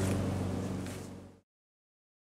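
Steady low background hum with a few even tones, fading out about a second and a half in and followed by dead silence.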